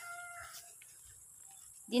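A rooster crowing, the held last note of its crow fading out in the first second, followed by quiet.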